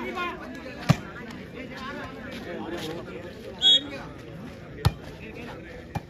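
Volleyball struck by hand in sharp single smacks, about a second in and again just before the five-second mark and near the end, over crowd chatter. A short, shrill referee's whistle blows a little past halfway, before the serve.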